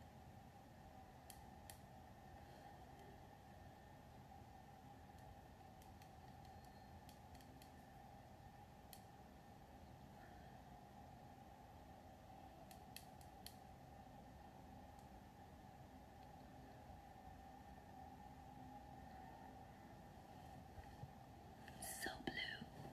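Near silence: faint room tone with a steady low hum and a few soft, brief clicks.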